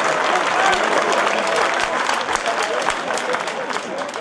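Football crowd cheering and clapping a goal: shouting voices over dense applause, easing slightly toward the end.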